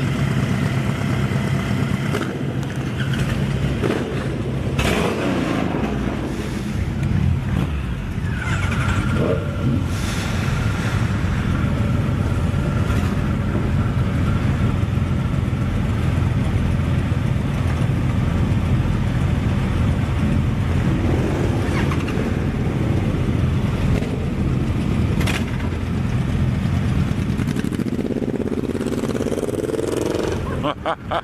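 Motorcycle engines idling with a steady low rumble. Near the end one engine revs up, rising in pitch.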